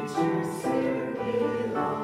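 Church offertory music: many voices singing slow, sustained chords that change every second or so, with keyboard accompaniment.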